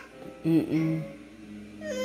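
Wordless voices: a woman's low "mm" with a dipping pitch, then a steady held hum, and a toddler's high voice starting up near the end.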